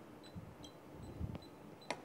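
Faint clicks and light knocks of kitchen utensils and containers being handled on a counter: a few scattered taps, the strongest just before the end.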